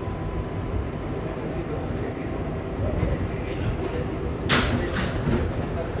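Interior of an R188 New York subway car: a steady low rumble with a faint high steady whine, which cuts off about four and a half seconds in, where a sudden loud hiss of air comes and fades over about a second as the train stops and readies its doors.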